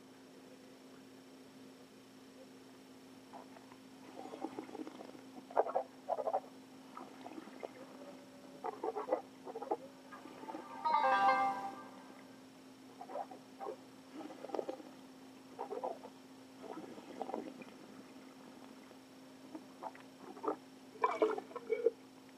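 Mouth sounds of wine tasting: short irregular slurps and swishes of a sip of red wine in the mouth, with one longer, louder one a little past halfway. Near the end, spitting into a metal spit cup.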